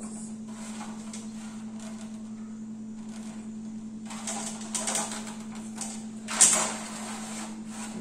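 Plastic spatula scraping across a metal baking tray as baked corn cakes are lifted off it, faint at first, then several louder scraping strokes from about halfway in, the loudest near the end. A steady low hum runs underneath.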